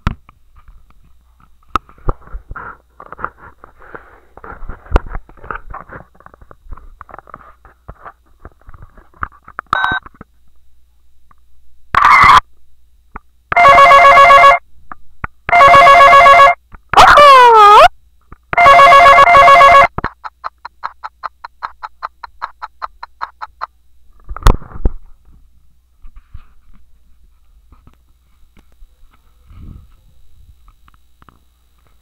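Toy phone's electronic sound effects from its small speaker, set off by button presses. Faint clicks come first. Then, about halfway through, one short tone and four loud, electronic, ring-like tones of about a second each follow, one of them a falling sweep. After them come a quieter fast buzzing pulse and a single sharp click.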